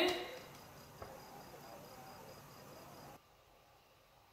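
Faint cricket chirping, a rapid, even, high-pitched pulsing, which cuts off abruptly about three seconds in.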